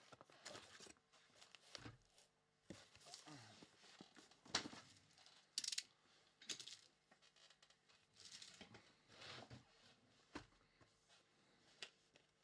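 Faint rustling, scraping and a few sharp knocks of cardboard being handled: a shipping carton being opened and a trading-card hobby box lifted out and set down.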